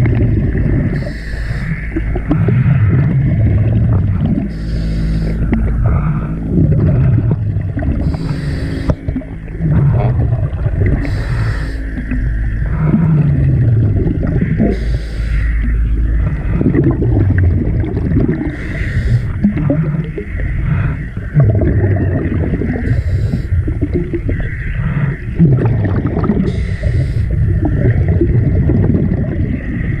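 Scuba diver's regulator breathing, heard through an underwater camera: a short hiss repeats about every three to four seconds, and between the hisses exhaust bubbles rumble and gurgle with falling low tones.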